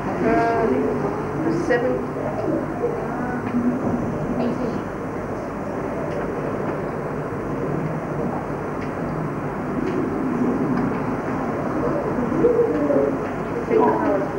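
Classroom hubbub: many students' voices talking over one another, with no single voice clear. A few voices stand out briefly near the start and again near the end.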